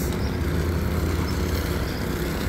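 An engine running steadily at a constant speed, a continuous low drone, typical of the petrol engine of a power trowel working the concrete slab.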